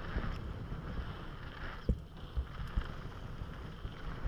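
Wind rushing over an action camera's microphone and mountain bike tyres rolling over a packed gravel trail at speed, with a sharp knock about two seconds in and a few lighter ones after.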